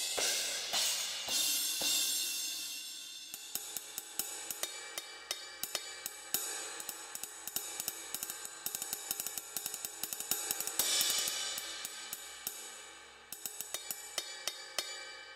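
Alesis Strata Prime electronic drum kit's cymbal sounds: a cymbal struck and ringing out over the first few seconds, then a steady ride cymbal pattern of quick, even strokes, with another cymbal hit near the end washing out for a couple of seconds.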